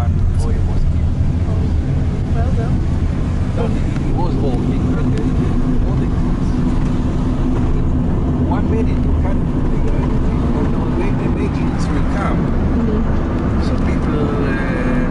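Steady low rumble of a moving car's engine and tyres, heard inside the cabin, with faint voices talking over it.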